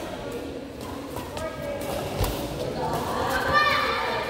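Indistinct voices echoing in a large indoor sports hall, with a few sharp hits in the middle as a badminton rally gets going.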